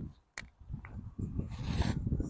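Wind buffeting the microphone in an uneven low rumble, with one sharp click about a third of a second in and a hissing gust in the second half.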